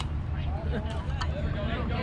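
Indistinct chatter of spectators around a youth baseball field over a steady low rumble. A single sharp crack comes right at the start as the batter swings at a pitch.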